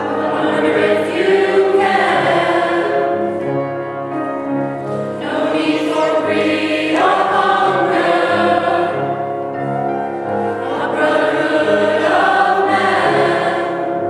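Mixed choir of men's and women's voices singing a sustained choral piece, in phrases that swell and ease off every few seconds.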